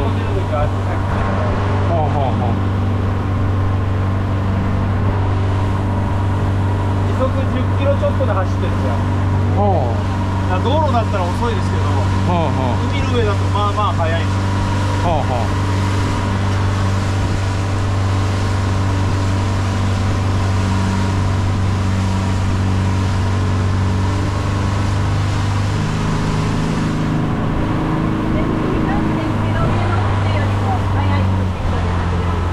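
Motorboat engine running steadily under way, a constant deep drone with wind and water rush over the open deck.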